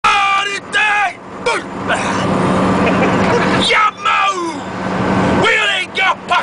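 A man shouting a haka chant in short, forceful calls, with a steady low hum of the bus engine underneath.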